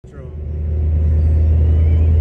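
Steady low car rumble of engine and road heard from inside a moving car at freeway speed. It comes up over the first half second.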